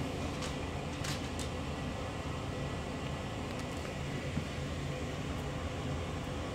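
A steady low background hum with two faint clicks about a second in.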